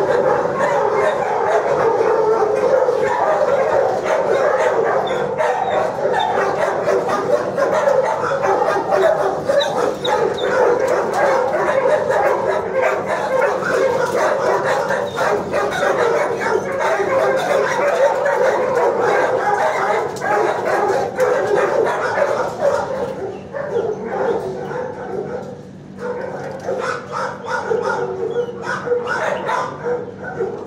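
Many dogs barking and yipping at once in a shelter kennel block, a continuous loud din with no pauses that thins out somewhat near the end.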